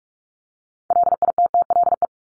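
Morse code sent as a pure sidetone of about 700 Hz at 45 words per minute: a rapid string of dits and dahs that starts about a second in. It is the first sending of the practice word "little".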